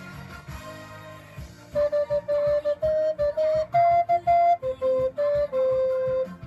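Alto recorder playing a melody over a pop backing track. The recorder comes in about two seconds in with short, separately tongued notes, then moves to longer held notes.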